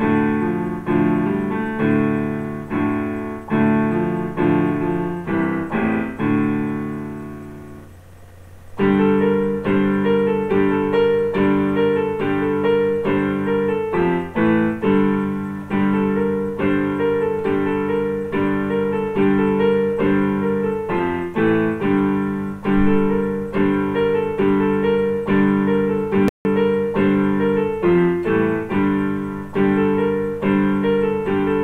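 Electronic keyboard set to a piano voice, played by hand in D: a passage of chords that dies away about eight seconds in, then a steady repeating figure of notes and chords.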